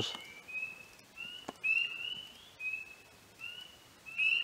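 Spring peepers calling: short, high, slightly rising peeps, about one every half second, faint.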